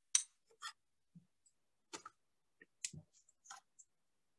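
Faint, irregular clicks and taps of painting tools being handled at a desk, about five sharp ones over four seconds.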